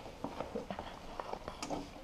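Faint scattered clicks and light rattling as a data cable's latching connector is pressed and pulled out of its socket.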